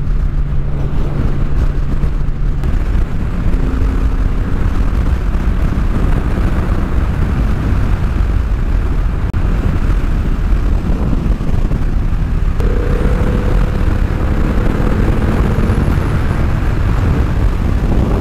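Triumph Rocket 3's 2,500 cc three-cylinder engine running steadily at highway speed under a heavy rush of wind and road noise, with a faint engine note that shifts pitch a few times.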